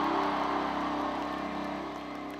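Live band music at a concert, held sustained notes with crowd noise beneath, fading out steadily.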